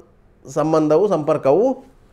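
Speech only: a man talking in Kannada, starting about half a second in after a brief pause.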